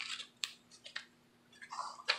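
Paper and fabric pages of a handmade junk journal being turned and handled: a few short, soft paper rustles and taps in the first second, then a longer rustle near the end.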